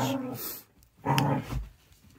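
A woman's voice: the end of a spoken sentence, then about a second in a short, low, closed-mouth 'mm' hum.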